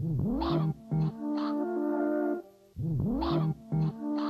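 Synthesized music from a VCV Rack modular synth patch, playing a loop that repeats about every three seconds. Each pass starts with a pitch glide that dips and rises again, then a held chord of sustained tones, then a brief drop in level. It is heard twice, with the second glide about three seconds in.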